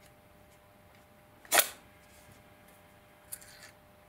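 One sharp click as the Olight Baton 4 torch is pulled free of its charging case, followed about two seconds later by a fainter click and a brief rustle.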